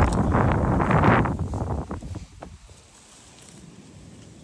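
Wind buffeting the microphone, with dry grass brushing and crackling against it, loud for about the first two seconds and then dropping to a faint hush.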